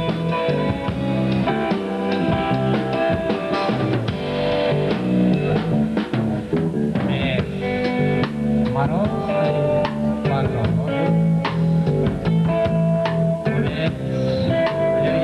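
A rock band playing: guitar chords held over a steady drum-kit beat.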